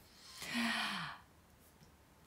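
A woman's breathy sigh, about a second long, with a falling pitch.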